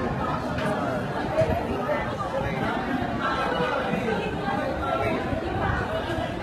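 Indistinct chatter of several voices talking over one another, steady throughout.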